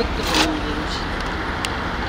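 Street traffic: a steady low rumble of vehicles on the road, with a single sharp click a little after halfway.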